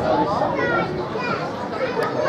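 Indistinct, overlapping voices of several people talking and calling out, with no words that can be made out.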